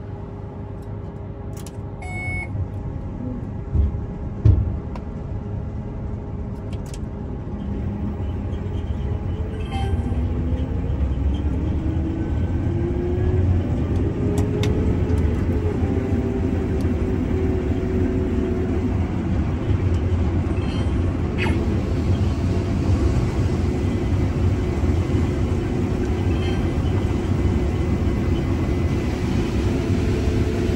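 Combine harvester running, heard from inside its cab, with a sharp click about four seconds in. Around ten seconds in it grows louder and a climbing whine rises over a few seconds, then it runs steady and louder while unloading corn through its auger into a grain cart.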